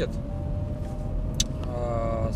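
Inside the cabin of a Chrysler Grand Voyager minivan on the move: steady low road and engine rumble with a thin steady whine. The owner puts the whine down to the power steering on a cold engine and says it goes away once the engine warms up. A single short click comes a little past halfway.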